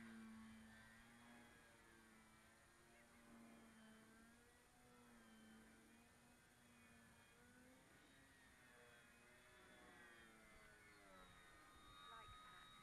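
Faint, steady drone of the Durafly Tundra RC plane's electric motor and propeller in flight overhead, its pitch drifting slowly up and down.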